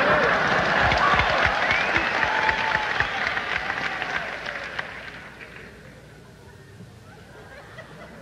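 Live concert audience clapping, with voices calling out over the applause, loud at first and fading down after about five seconds.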